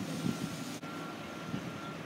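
Steady outdoor background noise with a faint, steady high-pitched tone running through it, and a brief break about a second in.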